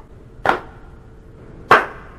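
Two sharp knocks about a second apart over faint hiss, the second slightly louder.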